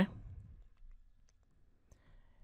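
A few faint clicks from a computer mouse over quiet room tone, the clearest near the end, just after the end of a spoken word.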